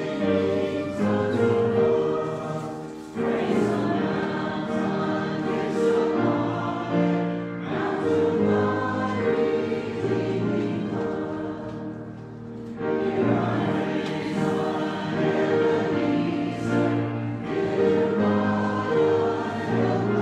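Congregation singing a hymn together, in phrases with short breaks between the lines.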